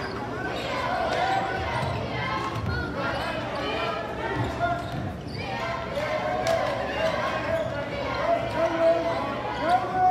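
Basketball dribbled on a hardwood gym floor, the bounces echoing in the large hall, over a steady mix of indistinct voices from players and onlookers.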